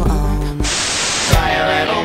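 Edited-in song music cut off about half a second in by a short burst of static-like hiss, ended by a click, after which a different song with guitar starts.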